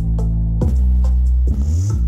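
Bass-heavy electronic music played loud through Panasonic SB-VK800 and SB-W800 twin-woofer speakers during a bass test. Three deep bass notes are struck, and the last slides upward in pitch near the end.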